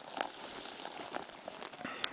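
Faint rustling with a few light scattered knocks: a person kneeling and sitting down on dry cut grass and handling a cloth bag.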